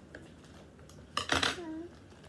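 Scissors snipping open a plastic toy wrapper: a short cluster of sharp clicks and crinkles about a second in.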